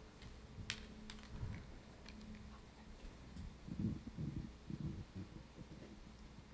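Faint scattered clicks, a few in the first second or two, then a run of soft low knocks about two-thirds of the way in, over a steady low hum.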